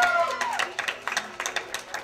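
An audience clapping, many separate hand claps, after a held voice tone fades about a quarter of a second in.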